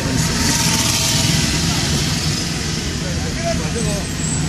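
Steady engine hum and road noise of a car moving slowly in traffic, heard from inside the cabin, with a brighter hiss over the first couple of seconds.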